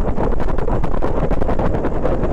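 Loud, steady wind buffeting the microphone of a camera riding on a bicycle during a fast downhill run on an asphalt road.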